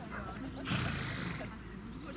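A horse gives one short, noisy blow about two-thirds of a second in, lasting about half a second, over faint distant voices.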